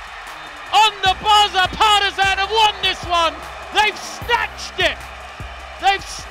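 Excited shouting over arena crowd noise, in short rising and falling calls, with a music bed underneath.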